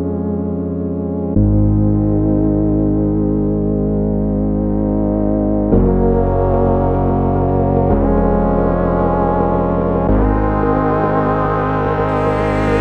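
Background music: held keyboard-synthesizer chords that change every two to four seconds.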